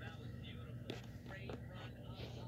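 Faint voices murmuring in the background over a steady low hum, with a couple of soft clicks about a second in and again half a second later.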